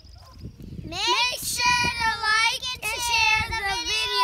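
Two young children singing together in high voices with long drawn-out notes, starting about a second in.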